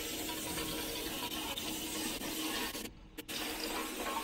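Plastic cap slitting machine running just after being switched on: a steady hissing rush with a faint hum underneath, dropping out briefly about three seconds in and then coming back.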